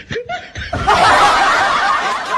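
Loud laughter bursting in suddenly under a second in and carrying on steadily.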